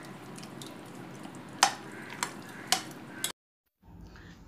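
Thick curd being added to a glass bowl of chopped cucumber, with four sharp clinks of a metal utensil against the glass over a steady low hiss. The sound cuts off suddenly near the end.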